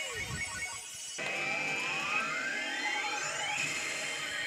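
Yoshimune 3 pachislot machine's electronic sound effects on the result screen of a bonus that paid out 100 coins. A falling tone comes first, then from about a second in a long rising sweep plays over steady electronic tones.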